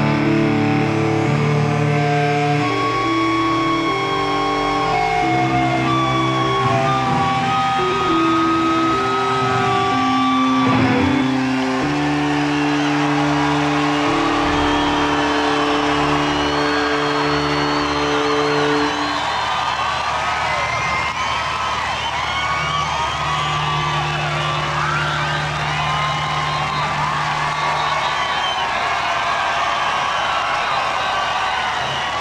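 A live rock band holding long sustained guitar chords that end about two-thirds of the way through, then a festival crowd cheering and whistling, with a low held note returning briefly near the end.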